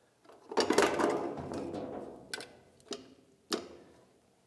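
Tinted dust cover of an EMT 950 turntable being swung down on its hinges: a rubbing creak lasting about a second and a half, then three sharp clicks about half a second apart.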